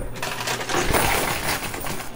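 Quarters, casino-style chips and replica gold bars clattering continuously as they are pushed off the front ledge of a coin pusher machine, busiest about halfway through.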